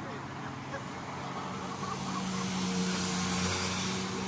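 Race convoy vehicles, team cars with bicycles on their roof racks, driving past on the road below; the engine hum grows louder to a peak around three seconds in as one passes close, then eases.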